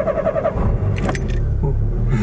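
Citroën Saxo's engine being started: the starter cranks in a quick even rhythm for about half a second, then the engine catches and settles into a steady idle.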